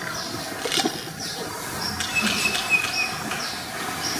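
Birds chirping in the background: short, high, falling calls repeated every half second or so, with one thin, longer whistle-like note about two seconds in.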